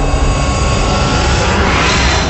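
Loud jet-like whoosh sound effect of an animated logo intro, a rushing noise over a deep rumble that swells toward a peak near the end.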